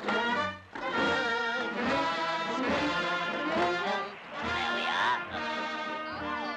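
Lively orchestral cartoon score with brass, playing throughout.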